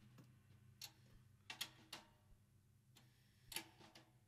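Near silence broken by about five faint, short ticks at uneven intervals, a close pair near the middle: light taps of drumsticks.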